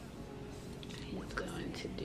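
Faint soft rustling and small clicks of fingers twisting two strands of locs together in a double-strand twist.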